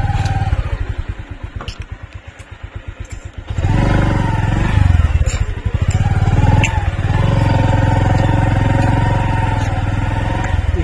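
Motorcycle engine running at low revs with a rapid pulsing beat. About three and a half seconds in, it suddenly gets louder and then runs steadily at higher revs.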